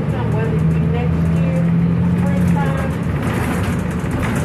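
A steady low hum, with a held low tone through the middle, under indistinct voices.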